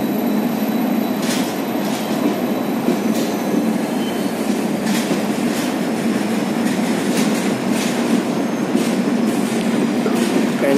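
Express train's passenger coaches rolling through a station at speed without stopping, a steady loud rumble of wheels on rail. Sharp wheel clacks over rail joints come roughly once a second, some in pairs.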